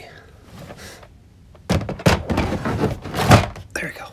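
A plastic parts organizer case full of LEGO pieces being forced back into its slot in a shelving rack: a quiet start, then about two seconds of plastic knocks and thunks, the loudest near the end.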